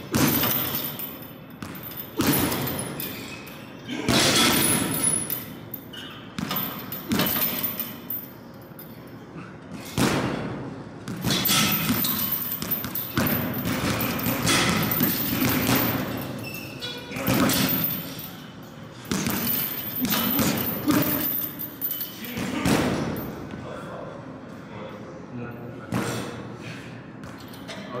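Boxing gloves thudding into hanging punching bags at irregular intervals.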